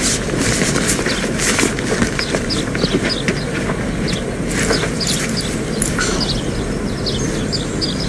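Outdoor background ambience: a steady low rumble, like distant traffic, with small birds chirping on and off.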